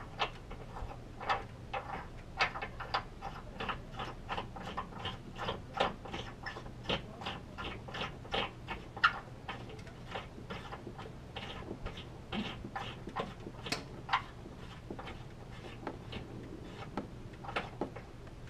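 Light, irregular clicks and scrapes, two or three a second, as a threaded license plate mount is turned by hand into the tow-hook hole of a Subaru WRX front bumper and snugged up.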